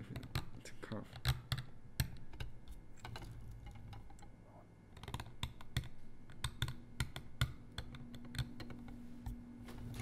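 Steel carving knife cutting into a soft seal stone clamped in a brass seal vise: irregular sharp clicks and scrapes as chips break from the stone. A faint steady hum comes in near the end.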